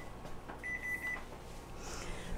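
Electric range's oven timer beeping: one steady high-pitched electronic beep about half a second long, starting about half a second in, over a faint low hum.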